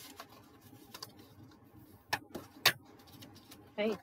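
Quiet handling of a scored strip of card being folded along its score lines with a bone folder, with a few soft clicks and two sharper ones a little past two seconds in.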